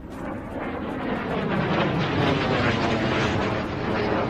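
A wide rushing noise that swells and then fades, with no voice over it.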